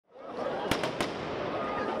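Firecrackers going off over a steady crowd din in the street: three sharp bangs in quick succession about three-quarters of a second in, the middle one fainter.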